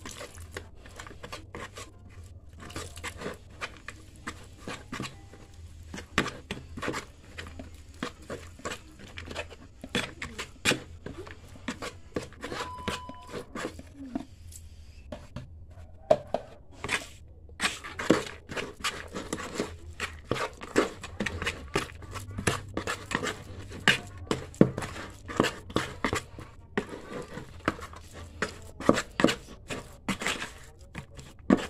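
A small mason's trowel scraping and knocking against the inside of a plastic bucket while wet cement mortar is mixed by hand. It makes a run of irregular, sharp scrapes and clicks that grow thicker and louder from about halfway through.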